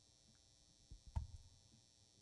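Near silence on a stage between songs, broken by two brief low thumps about a second in.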